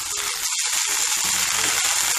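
Fresh mint leaves sizzling in oil in a steel kadai as they are turned by hand, a steady hiss with faint scattered ticks.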